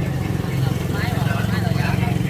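An engine running steadily at a low, even pitch, with faint voices in the background.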